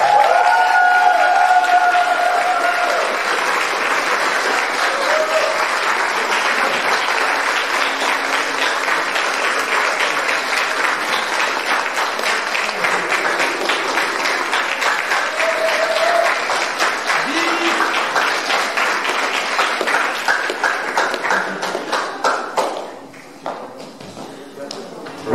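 Audience applauding, with a few voices calling out over the clapping. Near the end the applause thins to scattered claps and dies down.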